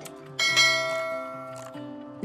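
A single bright bell chime strikes about half a second in and rings on, slowly fading. It is a sound effect for a like-and-subscribe button animation.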